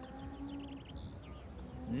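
Faint birds chirping in a short run of quick high notes, over quiet outdoor background with a low drawn-out tone in the first second.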